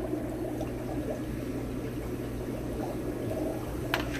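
Steady running and trickling water from aquarium filtration in a room full of fish tanks, over a low steady hum of pumps. There is one brief click near the end.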